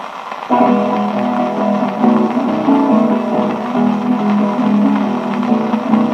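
Viola caipira and violão (acoustic guitar) playing the plucked instrumental introduction of a moda de viola, heard from a 1936 78 rpm shellac record; the instruments come in suddenly about half a second in.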